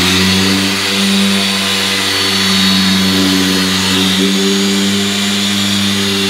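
Electric car polisher running at speed six, its foam pad working polish into a car door's paint: a steady motor hum that wavers slightly in pitch a couple of times.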